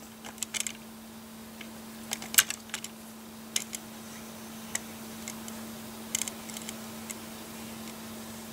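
Light, irregular plastic clicks and taps as a LEGO turntable plate carrying minifigures is turned by hand, with fingertips tapping the studded plastic.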